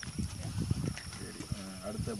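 A long, drawn-out vocal call at a steady pitch, starting about one and a half seconds in, after low, irregular rumbling that sounds like wind on the microphone.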